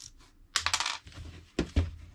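Small angle grinder being taken apart by hand, its metal and plastic housing parts clicking and rattling. A quick run of clicks comes about half a second in, then two knocks near the end.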